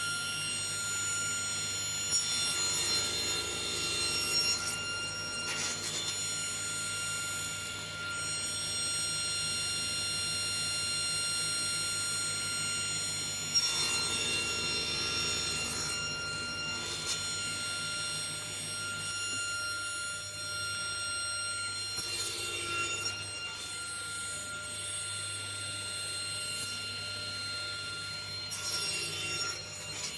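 Table saw running at full speed with a steady high whine, its blade tilted for 45° mitres, cutting through short wooden box sides several times on a mitre sled: each cut adds a brief noisy rasp over the whine.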